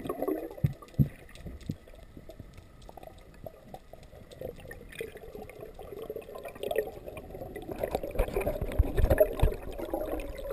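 Muffled underwater sound through a camera housing: water moving and knocking against the housing, with bubbling and splashing that grow louder over the last two seconds as a snorkeler breaks near the surface.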